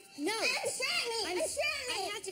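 High-pitched voices whose pitch swoops sharply up and down, with no words that can be made out.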